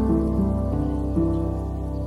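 Instrumental music: sustained chord notes that change every half second or so over a steady low bass, with no vocals.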